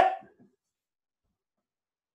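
A single short, sharp cry at the very start, lasting about half a second, followed by silence.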